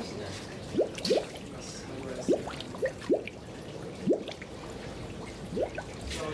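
Methane gas seeping up from the ground and gurgling through water: about seven separate bubbles pop at uneven intervals, each a short blip that rises quickly in pitch. The gas comes up from the ground around the mud volcano.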